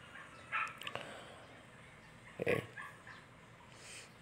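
A dog barking faintly a few short times, the loudest bark about halfway through.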